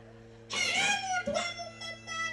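A high-pitched, cat-like cry from a person's voice through a stage microphone, starting about half a second in with one long sliding call and then breaking into several shorter cries.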